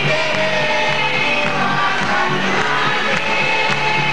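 Live band music with a singing voice over a pulsing bass line.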